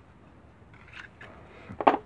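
Plastic utility knife being handled and set down on a workbench, with faint handling noises about a second in and one short, sharp clack near the end.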